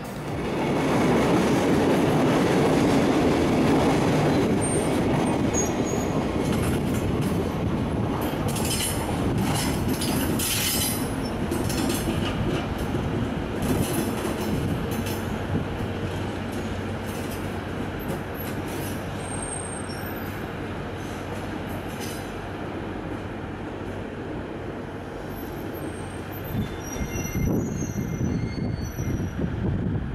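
JR DD200 diesel-electric locomotive running in a rail yard: a steady engine drone with wheel and rail noise. It is loudest in the first few seconds, eases off, and builds again near the end, with a few brief high squeals.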